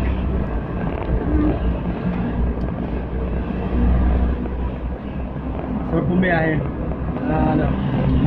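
Steady low rumble of a vehicle heard from inside its cabin, with brief voices about six seconds in and again near the end.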